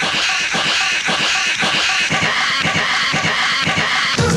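Dance-music megamix breakdown: the bass line and melody drop out, leaving a dense, rapid run of percussive hits and noise that fills the gap, and the bass returns right at the end.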